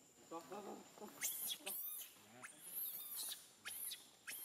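Baby macaque crying in distress: a lower whimper about half a second in, then a series of four or five shrill, high-pitched screams.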